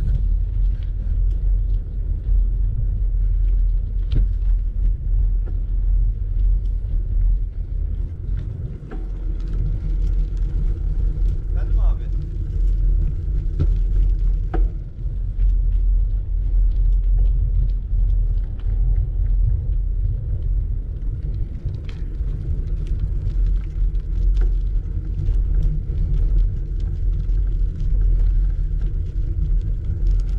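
Wind buffeting the camera microphone while moving along the street: a steady low rumble that swells and dips, with a few faint clicks.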